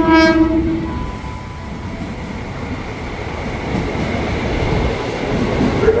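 Horn of an arriving KRL Commuter Line electric train (ex-JR 205 series) sounding once for about a second, followed by the steady rumble of the train running past along the platform.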